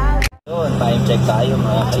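Music cuts off abruptly near the start, then a steady low engine drone is heard from inside a vehicle's cabin, under talking.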